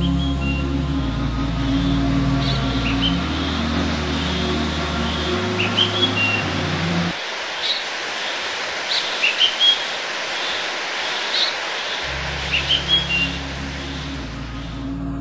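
Soundtrack of low held music notes, changing every couple of seconds, breaking off about seven seconds in and coming back about twelve seconds in, over a steady hiss. Short bird chirps come every second or two throughout.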